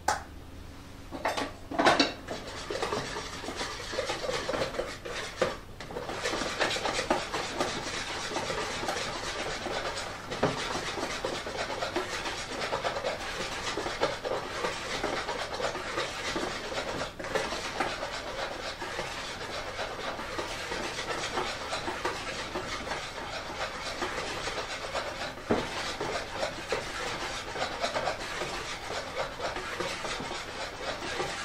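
Chiffon cake batter being mixed by hand in a bowl: a few knocks of the utensil on the bowl in the first two seconds, then continuous scraping and rubbing of the utensil against the bowl as it stirs.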